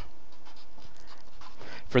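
Felt-tip marker scratching on paper while short letters are written, faint against a steady background hiss.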